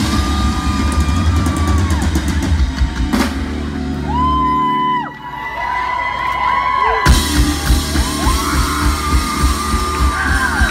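A live band playing loudly with drum kit, bass and guitar. Partway through, the drums and bass drop away for about two seconds, leaving only held, gliding high notes, then the full band crashes back in at about seven seconds.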